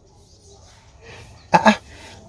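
A short double vocal sound, two quick pulses about one and a half seconds in, over a faint steady low hum.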